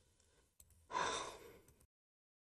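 A person sighing: one short breath out about a second in, fading over under a second. The audio then cuts off to dead digital silence.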